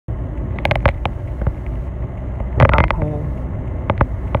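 Steady low rumble of a car's engine and tyres heard from inside the cabin while driving. A few sharp clicks come in the first second and another near the end, with a brief louder sound about two and a half seconds in.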